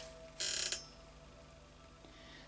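Tarot cards being picked up and handled, a brief papery swish about half a second in.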